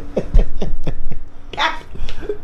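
Hearty human laughter: a quick run of ha-ha pulses that slows and fades about a second in, followed by a short breathy burst near the end.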